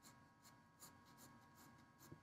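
Graphite pencil scratching faintly on drawing paper in a quick run of short strokes, about three or four a second, as fine hair texture is laid in with short tapered strokes.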